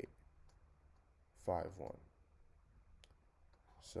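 A few faint, sharp clicks of a computer input device used to write on screen, over low room tone; the clearest click comes about three seconds in.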